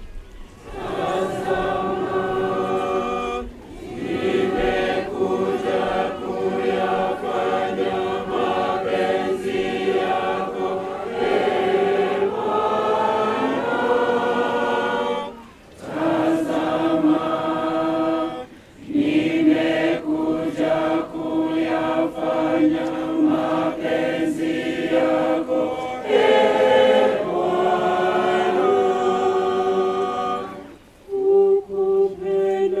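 Church congregation singing the responsorial psalm together in Swahili, in long sung phrases with brief pauses for breath about 4, 15 and 19 seconds in.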